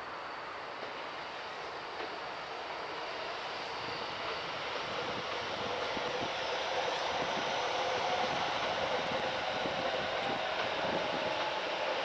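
A Yokosuka Line electric commuter train running along the tracks: a steady rumble with a hum that grows gradually louder as it approaches.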